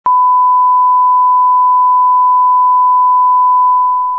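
Steady 1 kHz line-up test tone played over colour bars at the head of a video tape. It is one unbroken loud pitch that starts abruptly and begins fading near the end.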